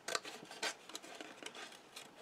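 Small scissors snipping through white cardstock: a few short snips, most of them in the first second.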